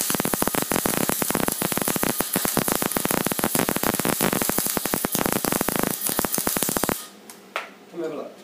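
MIG welding arc crackling steadily from a 200-amp inverter MIG welder running on pure CO2 shielding gas from a SodaStream bottle, welding steel. The arc cuts off suddenly near the end, and a single click follows.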